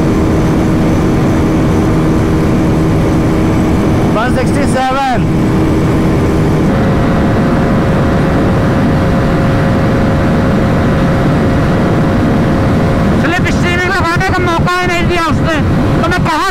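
Wind rush and a KTM RC390's 373 cc single-cylinder engine held at a steady high speed near its top end. About seven seconds in, it cuts to the Bajaj Pulsar NS400Z's 373 cc single-cylinder engine, also running steadily near top speed under heavy wind noise.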